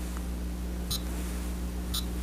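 Room tone: a steady low electrical hum, with two faint ticks about a second apart.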